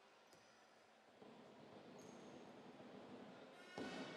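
Near silence in a basketball sports hall: a faint crowd murmur that rises a little after about a second, a few faint short high-pitched squeaks, and a short thump near the end.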